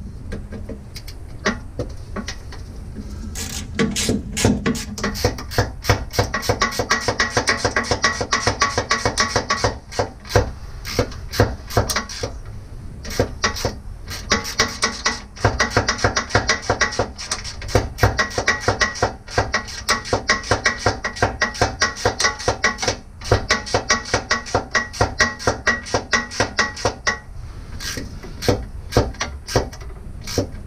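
A driver turning a 1/4-20 screw into the Jeep's frame: a long run of quick, regular clicks over a steady whine, in several spells with short pauses. It stops a couple of seconds before the end as the screw comes snug.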